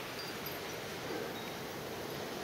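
Blizzard wind driving snow, heard as a steady faint hiss.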